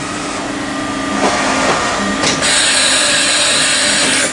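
Heckler & Koch BA 40 vertical machining center running through a tool change: a steady machine hum, a click about two seconds in, then a loud hiss that cuts off suddenly at the end.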